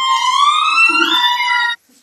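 Gibbon singing: one long, pure whooping note that rises steadily in pitch and then cuts off near the end.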